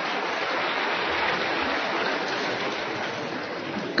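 Audience applauding steadily in a large hall, cut off abruptly near the end.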